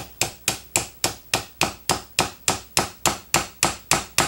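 Small hammer tapping a brass punch in a steady run of sharp metal taps, about four a second, drifting a steel replacement rear sight sideways into a pistol slide's dovetail.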